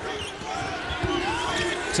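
Basketball bouncing on a hardwood court with short low thuds, under the noise of an arena crowd and voices.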